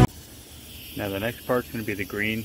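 Background music cuts off, leaving a faint hiss for about a second, then a man starts talking.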